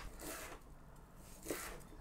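Faint crunching of small dallae (Korean wild chive) bulbs being crushed under the flat of a chef's knife on a wooden cutting board, with a brief louder crunch about one and a half seconds in.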